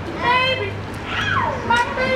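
Children's high-pitched voices calling and shouting in two short outbursts, one with a sharp downward slide in pitch, over a steady low hum.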